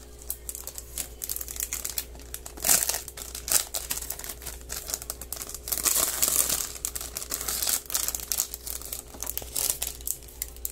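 Thin clear plastic packaging bag crinkling and rustling in irregular bursts as a small aquarium fish net is worked out of it by hand, with a few louder crackles along the way.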